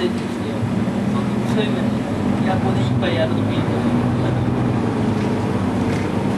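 Bus engine running steadily as the bus drives, heard inside the passenger cabin, with a low even hum, road noise and a few light rattles.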